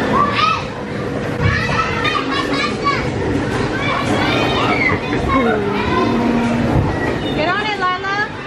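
Children playing: several high-pitched children's voices shouting and squealing over one another, with a faint steady hum underneath.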